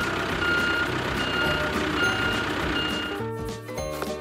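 Vehicle-reversing sound effect: a backup alarm beeps four times at an even pace over a noisy engine hiss, all of which stops about three seconds in.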